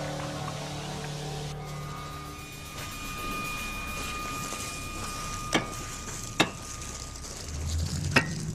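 Steady rushing background with two sharp cracks about five and a half and six and a half seconds in, as the hardened crust of a glowing pahoehoe lava flow is broken open.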